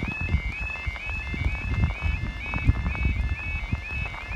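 Level crossing audible warning alarm, the UK 'yodel' type, sounding a rising two-tone warble that repeats about three times a second while the barriers are down, over a low rumble on the microphone.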